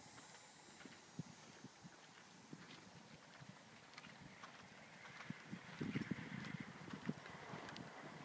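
Hoofbeats of a Thoroughbred horse on the soft sand footing of an arena: dull, muffled thuds, growing louder about six seconds in as the horse comes closer.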